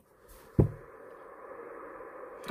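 Opening audio of a music video playing back through a speaker: a sudden thump about half a second in, then a steady hum-like drone.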